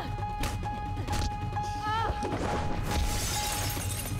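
Film soundtrack of a fight scene: a held music note runs under several sharp hits in the first second and a half, then a crash with breaking, shattering noise in the second half.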